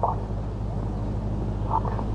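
Steady low hum and rumble of outdoor arena background noise, with two brief faint sounds, one just after the start and one near the end.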